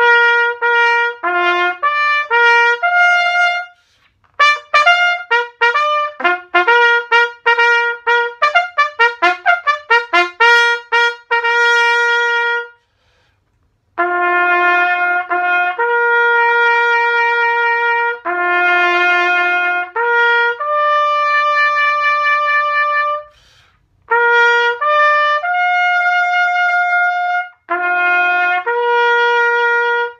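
Bugle call played on a prototype B.A.C. Instruments single-twist B-flat bugle with a trumpet bell: quick tongued notes for the first dozen seconds, then after a short break, slow long held notes. The player hears the bottom note as a little sharp to his ears, with the G, C, E and high G not too bad in tune.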